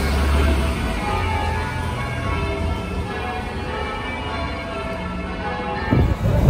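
Bells ringing, with many tones at different pitches overlapping.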